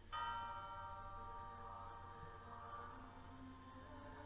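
Recorded music: a bell struck once right at the start, its many tones ringing on and slowly fading over a quiet sustained low background.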